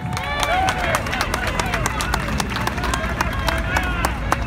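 Crowd of demonstrators: many overlapping voices talking, with scattered sharp claps and a low steady rumble underneath.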